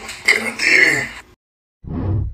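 A man's brief wordless vocal noise, like a throat-clearing grunt, that cuts off abruptly a little over a second in. After half a second of dead silence, the TikTok end-card sound effect starts near the end as a short low thump.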